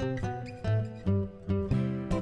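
Background music: acoustic guitar playing plucked and strummed chords, with a moving bass line and a new note every few tenths of a second.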